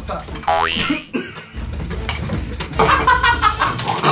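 A man slurping scalding-hot shirataki noodles, with a rising, strained whine about half a second in. Muffled grunting sounds follow as he and the other man hold scalding-hot oden in their mouths.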